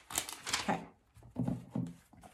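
Thin Bible pages being turned, a short papery rustle, with a few brief soft vocal murmurs.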